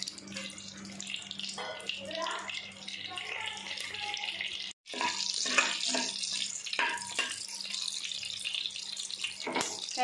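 Whole spices and bay leaves sizzling in hot butter and groundnut oil, a steady hiss with many small crackling pops. The sound cuts out for a moment near the middle.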